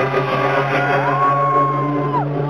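Electronic dance music from a DJ set played loud over a club sound system, with a steady low synth note. About halfway through, a long high note rises in and is held.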